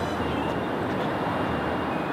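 Steady urban background noise: an even, low rumble of city traffic with no distinct events.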